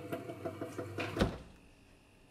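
Someone drinking from a can in quick gulps, then a refrigerator door swung shut with a thump about a second in.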